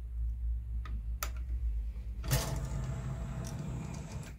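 Philips CD104 CD player's disc tray opening on its linear skate loading mechanism, driven by a freshly fitted loading belt: a couple of clicks about a second in, then a steady motor whirr from a little past halfway as the tray slides out.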